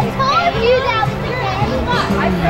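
Many people talking at once, with high-pitched children's voices calling out over the chatter and music playing in the background.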